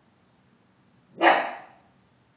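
A dog barks once, a single sharp alert bark about a second in that trails off quickly.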